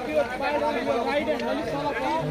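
Several people talking at once, their voices overlapping in an indistinct chatter.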